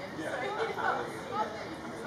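Indistinct chatter and calls from several people's voices, rising and falling with no clear words, over a steady outdoor background noise.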